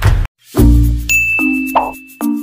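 Editing sound effects: the background music cuts off a quarter second in, and after a brief gap a deep boom sounds. A high bell-like ding then rings on over short pitched notes of a new jingle.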